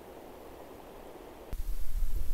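Faint steady hiss of quiet outdoor background, broken off suddenly about one and a half seconds in by a louder, uneven low rumble on the microphone.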